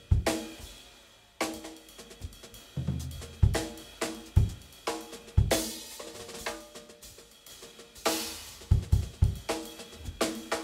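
Jazz drum kit played in a sparse, free-time passage: scattered snare and tom strokes and bass-drum thuds, with cymbal crashes at the start, about halfway through and near the end.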